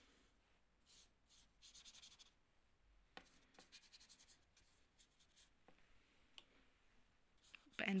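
Faint scratching and light taps of a paintbrush working on sketchbook paper, with a quick run of short strokes about two seconds in.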